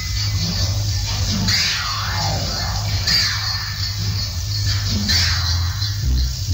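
Roots reggae played loud through a sound system, with a heavy, steady bass line. About a second and a half in, an electronic effect sweeps down in pitch.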